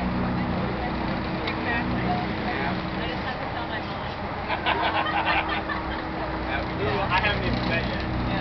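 Car barge's engine running with a steady low hum, over the rush of wind and churned water from the wake. Voices in the background.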